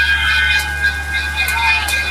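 Truck-mounted stack of large speaker cabinets playing loud, a long steady high tone held over a steady deep bass hum, with crowd voices and a few sharp clicks.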